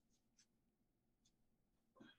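Near silence: faint room tone with two or three faint, brief ticks.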